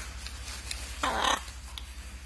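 A macaw gives one short, harsh call about a second in.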